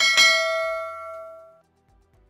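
A single bell-like ding sound effect, a bright metallic strike that rings out with several pitches and fades away over about a second and a half.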